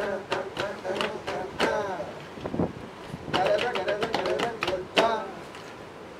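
Men's voices talking to one another in short, lively exchanges, busiest about halfway through.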